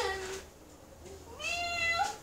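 A cat meows once near the end, a single call that rises in pitch and then holds.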